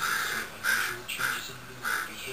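American crow cawing: four short, loud caws in quick succession, under half a second apart.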